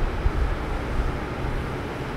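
Steady low rumble of background noise, with nothing else distinct over it.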